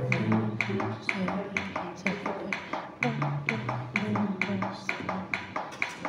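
Chest compressions on an infant CPR training manikin, its chest clicking at each push about twice a second, with voices quietly counting the compressions.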